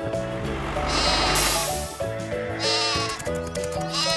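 Sheep bleating over background music: one long bleat about a second in, then a shorter one.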